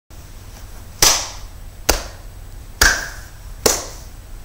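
Four slow hand claps, a little under a second apart.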